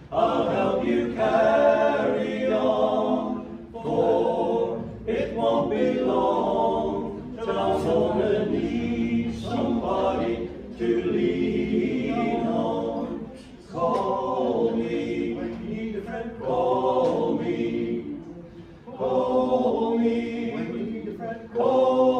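A men's a cappella group of five voices singing in close harmony, in phrases separated by brief breaths.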